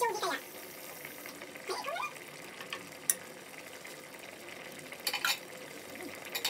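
Balbacua beef stew simmering in a stainless steel pot on a gas stove, a steady bubbling hiss, with brief voices in the background near the start and about two seconds in, and a few short clicks around three and five seconds.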